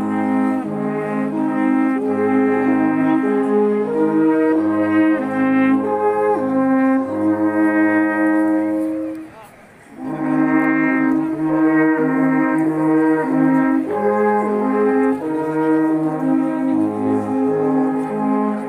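A group of alphorns playing a slow tune in harmony, with long held notes. The playing breaks off for about a second halfway through, then a new phrase starts.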